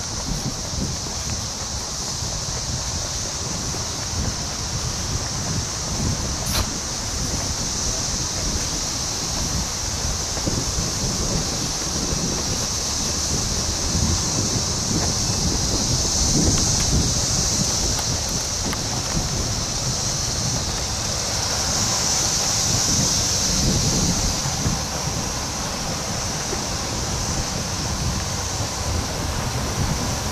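Wind rumbling on the microphone outdoors, under a steady high-pitched hiss that swells a little about halfway through and again a few seconds later.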